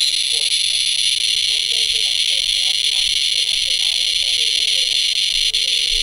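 SE International CRM-100 radiation monitor's audio clicking at a very high count rate, about 10,000 to 22,000 counts per minute. The clicks merge into one loud, steady high buzz, which switches on suddenly at the start. It signals strong gamma radiation from a person dosed with technetium-99m.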